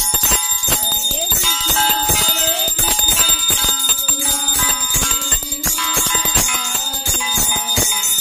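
Brass puja hand bell rung rapidly and continuously, its strikes running together into a steady ring, with a lower wavering tone that bends up and down underneath.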